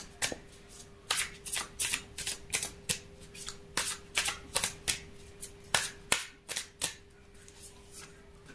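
Tarot deck being shuffled by hand: a run of crisp, irregular card flicks and slaps, about two or three a second, stopping near the end.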